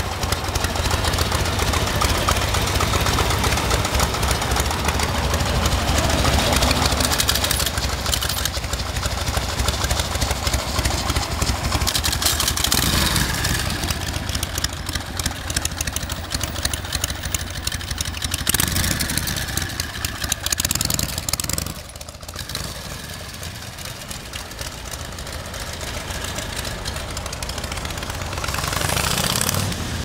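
Harley-Davidson Panhead V-twin motorcycle engine running at idle with a steady low beat, then pulling away. The sound drops off sharply about 22 seconds in, leaving quieter street traffic that swells again near the end.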